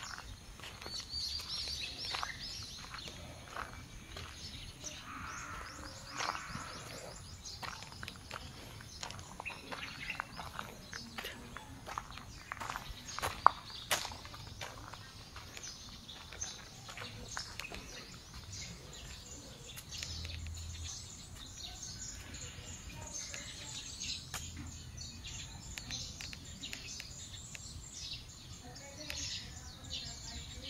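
Outdoor ambience with birds chirping among the trees and scattered light ticks and crunches. One sharp click, a little under halfway through, is the loudest sound.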